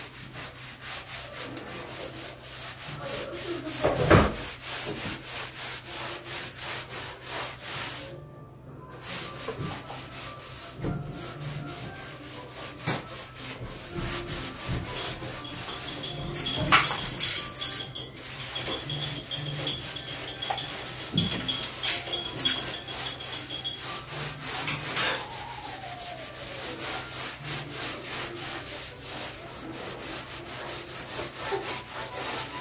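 Cloth scrubbing a painted wall in quick repeated back-and-forth strokes, with a single knock about four seconds in.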